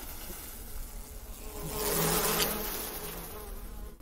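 Buzzing of a swarm of flying insects, swelling to its loudest about two seconds in and then fading, with a low hum beneath it.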